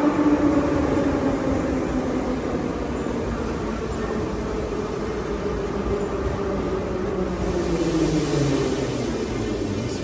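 Metro train pulling into the platform and braking, its motor whine sliding steadily lower in pitch as it slows, over the rumble of wheels on rail.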